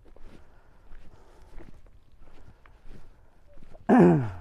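Footsteps crunching on a stony dirt track, a soft step about every two-thirds of a second, with a short falling vocal sound from the walker right at the end.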